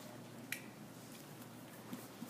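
A sharp single click about half a second in and a softer one near the end, over quiet classroom room tone.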